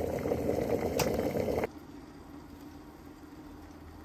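Electric kettle coming to the boil, a dense rolling rumble that stops abruptly a little under two seconds in, leaving only a faint low hum. A single sharp click sounds about a second in.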